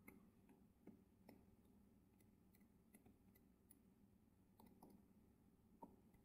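Near silence with a few faint, scattered clicks from a stylus tapping on a tablet screen during handwriting.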